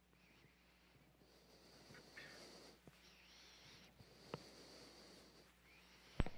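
Near silence: a faint steady hiss and low hum, with one small click about four seconds in.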